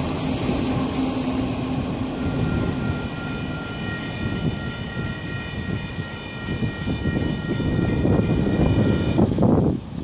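Florida East Coast Railway freight train rolling past with a steady rumble, as its rear end goes by. A steady high-pitched squeal comes in about two seconds in and stops shortly before the end.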